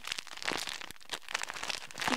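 Plastic packaging of loom bands crinkling and rustling in the hands, in short scattered crackles.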